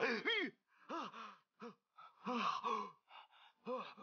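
A man groaning and sobbing in about six short, wavering cries with gasps between them, the anguish of an opium addict in withdrawal.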